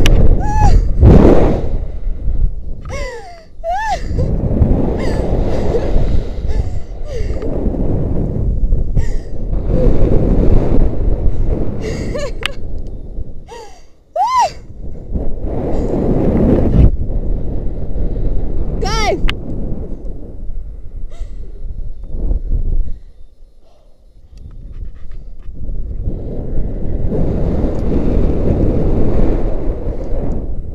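Wind rushing over the microphone of a hand-held camera as a rope jumper swings through the air on the rope. The rush swells and sinks, dropping away almost to nothing three times, with a few short high cries from the jumper.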